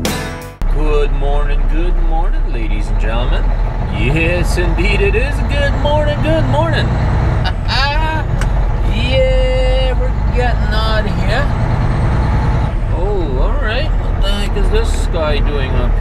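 Guitar music cuts off just after the start, giving way to the inside of a Volvo 780 semi truck's cab. Its Cummins ISX diesel runs with a steady low rumble as the truck rolls slowly, with speech over it.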